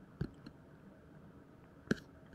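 Quiet room tone broken by two short clicks: a soft one about a fifth of a second in, and a sharper one near the end.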